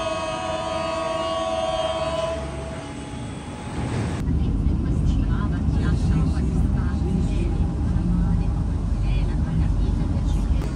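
Milan metro train: first a steady pitched tone sounds for about two seconds at the platform. About four seconds in, the sound changes suddenly to the loud, deep rumble of the train running, heard from inside a crowded carriage with passengers' voices.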